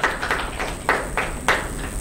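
Small audience applauding, a few hands clapping at about three claps a second, dying away after about a second and a half.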